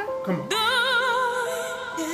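A male pop-opera singer in a high register: one note breaks off, then the voice swoops up into a new long note with a wide vibrato, held and slowly fading, over sustained orchestral accompaniment.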